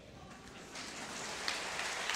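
Audience applause, faint and even, starting about three quarters of a second in.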